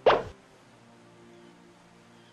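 A short, loud pop-style sound effect that drops quickly in pitch and lasts about a third of a second, right at the start. Soft background music runs under it and carries on after it.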